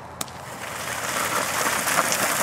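Cut bicycle tires dragged along the ground by harnessed dogs, a scraping hiss that builds steadily as the dogs move off, after a single click about a fifth of a second in.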